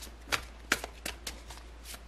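A tarot deck being shuffled by hand: a run of irregular sharp card slaps and flicks, several a second.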